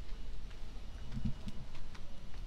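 Footsteps on a stone-paved street: a few faint, short clicks about half a second apart, over a low rumble.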